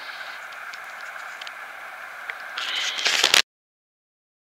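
Handling noise on a hand-held camera's microphone: a steady hiss with a few faint ticks, then a loud scraping rustle near the end that cuts off suddenly into silence.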